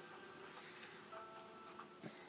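Near silence: room tone, with a faint, brief steady tone a little past halfway.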